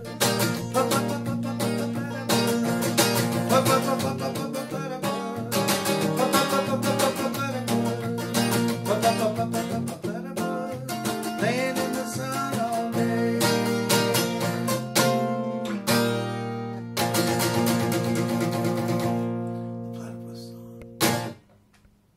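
Acoustic guitar strummed, steady chords that thin out into a closing chord left to ring and fade, then one last short strum before it stops.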